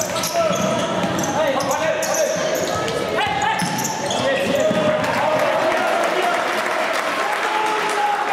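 Indoor futsal play on a wooden court: players' voices calling out and echoing around the hall, with the ball being struck and shoes squeaking on the floor, one quick rising squeak about three seconds in.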